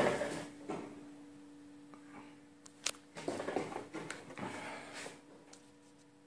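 PDR slide hammer glue-pulling a dent in a car door panel: a single sharp snap about three seconds in, then a few seconds of irregular handling clatter and a smaller click, over a steady low hum.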